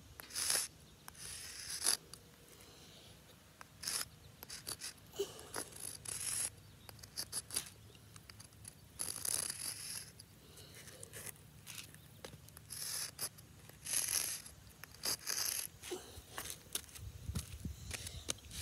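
Sidewalk chalk scraping over a hard ground surface in short, irregular drawing strokes, with light clicks and taps in between.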